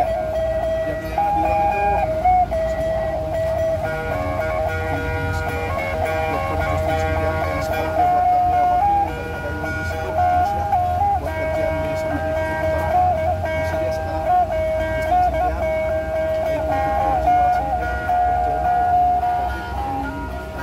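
Two sundatang, the two-string boat lutes of Sabah, played together: a fast, repetitive plucked tune stepping back and forth among a few notes.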